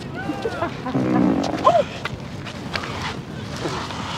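A loud, low, buzzing fart sound about a second in, lasting about half a second, followed at once by a short high-pitched cry.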